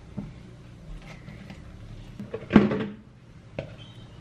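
Hands kneading and shaping soft bread dough on a granite countertop, quiet handling noises with one louder thump about two and a half seconds in and a sharp click near the end.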